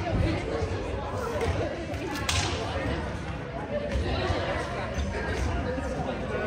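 Indistinct voices of players talking on a gym court, with one sharp smack of a ball hitting the wooden floor a little over two seconds in.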